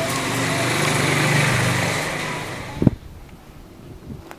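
Engine of a passing motor vehicle, growing louder to a peak about a second and a half in and then fading. A sharp knock comes near three seconds, and the sound drops away suddenly after it.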